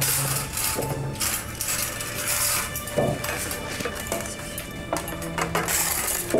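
Soft background music with steady held tones, over plates and cutlery clinking and knocking on a dining table as food is served.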